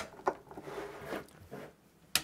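Handling noises as a metal network switch is shifted on a desk and its power cable pushed into the back: a short scrape or click about a quarter second in, then faint rustling.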